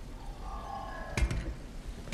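Soft sustained film-score tones over a low background rumble, with a single thump a little past the middle.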